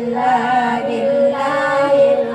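Group of women singing together into microphones, amplified over a loudspeaker, with long held notes.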